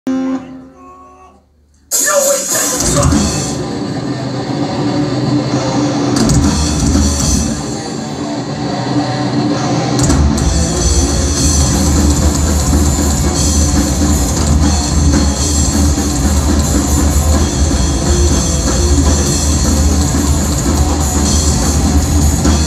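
Thrash metal band playing live through a club PA, with distorted electric guitars and a drum kit. The band comes in suddenly about two seconds in after a brief quieter moment, and the low end gets heavier and steadier about ten seconds in.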